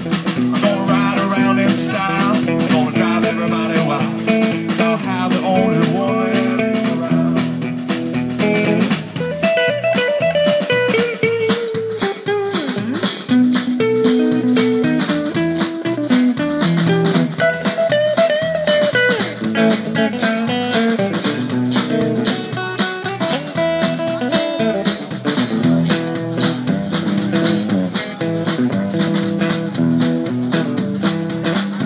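Live band of electric guitars, bass guitar and drum kit playing an instrumental break of a country-rock song, with an electric guitar lead bending notes over a steady beat.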